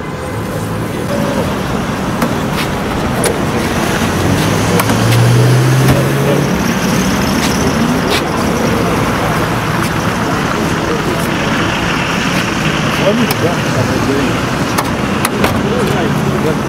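Steady road traffic noise with car engines running, a low engine hum swelling about five seconds in, and faint indistinct voices in the background.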